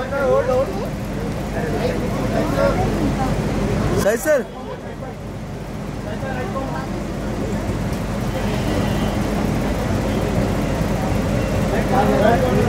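Overlapping voices of press photographers chattering and calling out, over a steady low hum. One louder call of "sir?" about four seconds in.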